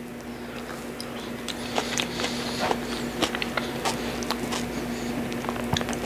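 A fork clicking and scraping irregularly against a stainless steel bowl of cooked onions, with chewing, over a steady low hum.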